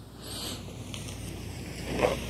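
Soft rustling of Bible pages being turned, many at once: a steady papery hiss with a brief brighter swell about half a second in, growing slightly louder toward the end.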